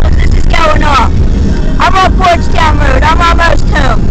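Steady low road and engine rumble of a car driving, heard from inside the cabin, with a voice talking over it in short phrases.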